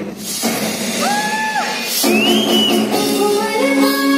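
Pre-recorded dance-mix music played loud over a hall's speakers for a group dance routine: a sliding electronic tone about a second in, then singing over held notes.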